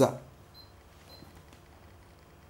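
A man's spoken phrase trailing off, then a pause of quiet room tone with two faint, short high tones about half a second and a second in.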